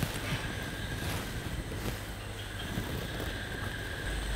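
Quiet background room tone with a low steady hum and a few faint ticks.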